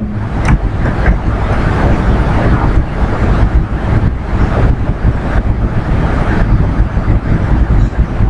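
Loud, steady rumbling noise, heaviest in the low end and wavering in strength, with no clear pitch. A single faint click comes about half a second in.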